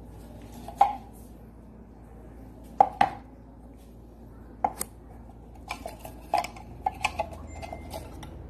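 Empty metal tin cans being handled and unstacked, knocking against each other and a tabletop in a series of sharp, irregular clinks and knocks. The cans have just been shot through by a homemade PVC gun.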